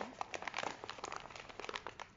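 Paper flour bag crinkling as it is folded closed and set down, a rapid irregular run of small crackles.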